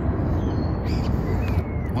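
Steady low outdoor rumble with a few faint, thin high chirps from birds.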